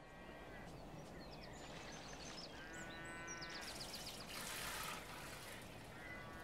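Faint sheep bleating over a steady background hiss: a short bleat at the start and a longer, wavering one about three seconds in, with short high chirps in between.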